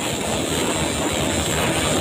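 Many motorcycle engines running at once, a loud, dense, steady din with a low rumble.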